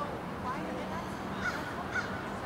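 A bird calls several times in short calls over a steady outdoor background hum.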